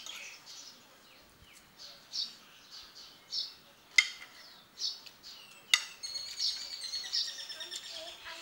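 Small birds chirping, short high calls repeated every half second or so with a quicker run near the end. A sharp clink of a spoon or fork on a plate comes about four seconds in and another just before six seconds; the first is the loudest sound.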